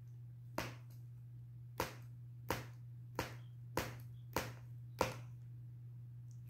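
Seven short, sharp clicks or snaps, unevenly spaced about half a second to a second apart, over a low steady hum.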